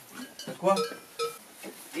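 A man's voice: a few short words with pauses in between.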